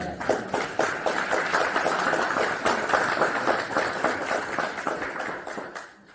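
Congregation applauding, many hands clapping at once, dying away near the end.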